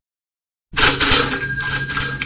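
Dead silence, then about two-thirds of a second in, a loud bell-like ringing starts suddenly, with steady high tones over a hiss and a few sharp clicks.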